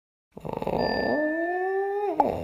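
A cartoon cat's yowl sound effect: one long howling call that glides slowly upward in pitch, with a thin steady high tone above it.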